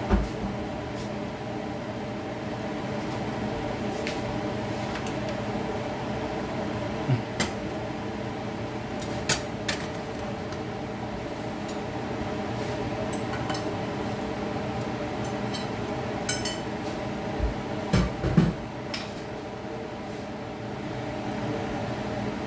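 Plates and cooking utensils clinking and knocking on the stove and counter several times: a few sharp clinks about a third of the way in, more near the end. Under them a steady hum and hiss of a pan frying on the stove.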